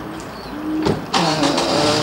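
A car's engine running, quieter at first and louder from about halfway through.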